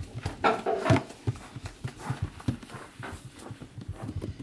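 Hands pressing and patting rounds of bread dough flat on a wooden table, a run of soft knocks about two or three a second. A brief animal call sounds from about half a second to one second in.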